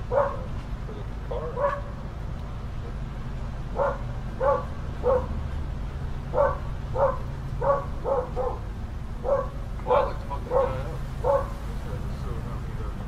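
A dog barking repeatedly: about fourteen short barks, a brief pause after the first two, then a steady run of barks about every half second to a second.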